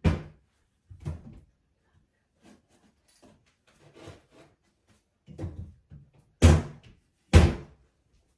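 Doors banging shut in the house, a string of sharp knocks with the two loudest near the end, under a second apart.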